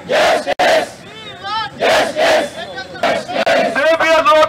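Crowd of protesters shouting slogans: a single voice calls out and the crowd shouts back together, in loud alternating bursts.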